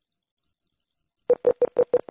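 Silence, then a little over a second in, a quick run of short, identical electronic beeps at one steady pitch, about six a second. These are synthetic interface keystroke beeps, one for each character entered into the on-screen number field.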